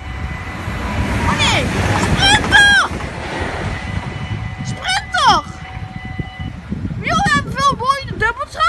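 Level-crossing warning bell ringing steadily, then stopping about six and a half seconds in as the barriers begin to lift. A low rumble swells in the first few seconds, and high-pitched voices call out several times.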